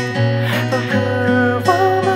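Acoustic guitar playing an accompaniment with a male voice singing over it, a Japanese song in an acoustic arrangement.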